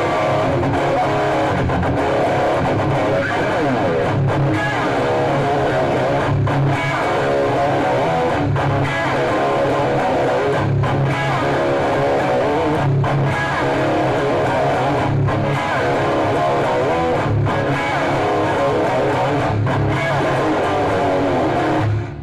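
Electric guitar played through an amplifier without a break, heard over a video-call connection.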